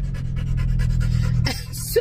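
A dog panting in the back seat of a car: a steady run of quick, even breaths over the cabin's low hum, with a short hiss near the end.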